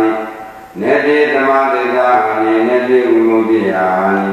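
A Buddhist monk chanting Pali paritta verses in a slow, melodic recitation with long held notes. A phrase ends right at the start, and after a brief breath a single long chanted phrase runs on for about three seconds, fading near the end.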